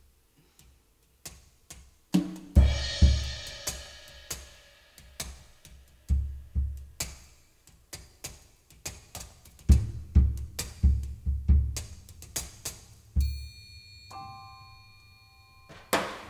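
Solo percussion intro on drum kit and frame drums played with mallets: faint light clicks at first, then about two seconds in irregular phrases of struck drums with deep low thumps and a splash of cymbal wash. In the last few seconds a sustained metallic ringing tone is held under scattered strikes.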